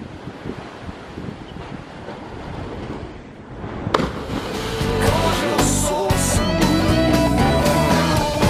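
Wind and surf noise on the microphone, broken about four seconds in by a sharp splash as a cliff jumper hits the sea. Rock music with electric guitar then fades in and takes over, growing louder.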